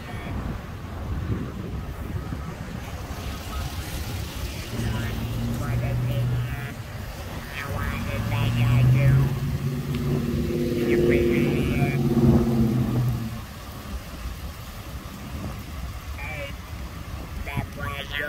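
Ford Explorer SUV engine running as the vehicle moves off. The revs swell twice, briefly about five seconds in and then longer from about eight to thirteen seconds, before settling back.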